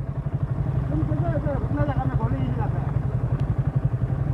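Yamaha sport motorcycle's engine idling steadily with an even, quick pulse while stopped; faint voices are heard in the middle.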